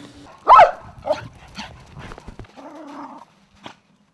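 A dog barks, loudest once about half a second in, followed by a few softer barks and a short drawn-out one.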